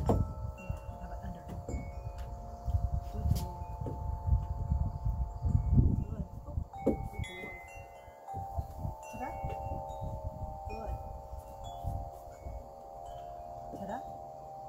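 Wind chimes ringing: several long, clear tones that start at irregular moments and overlap. Low thumps and rumble sound beneath them, mostly in the first half.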